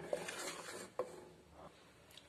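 A spatula stirring and scraping thick masala paste in an aluminium pressure-cooker pot, faint, with one sharp knock about a second in.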